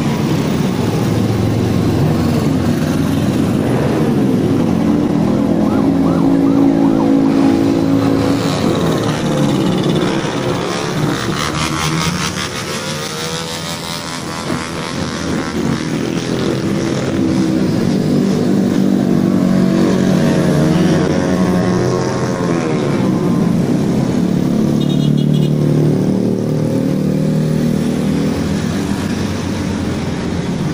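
A stream of motor scooters and small motorcycles passing one after another, their engines rising and falling in pitch as each goes by. The sound dips a little about halfway through, then builds again as more bikes arrive.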